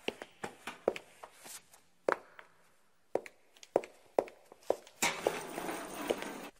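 Footsteps on a hard floor: a string of short, irregular steps, about two or three a second, followed near the end by a second or so of steady noise.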